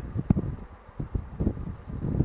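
Wind buffeting the microphone of a camera on a moving motorcycle trike: a gusty low rumble with irregular short thumps.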